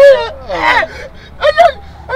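A man's voice in animated talk: a word trailing off, then a breathy exclamation falling in pitch, and a short sharp utterance near the end.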